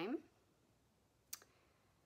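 A word trails off, then a quiet room with a single short, sharp click about a second and a half in.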